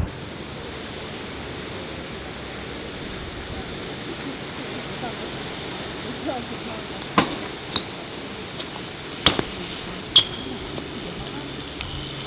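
Steady open-air background hiss, broken in the second half by four sharp metallic clinks, each with a short ring, from a BMX bike being ridden.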